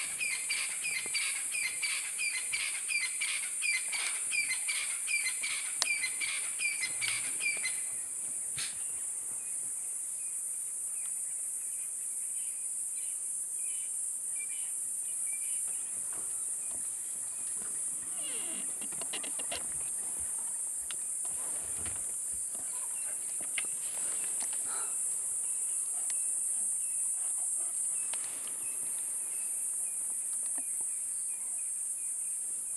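Steady high-pitched insect drone, with a bird giving a fast series of repeated calls, about two or three a second, for the first eight seconds or so. Fainter calls and a few soft rustles follow.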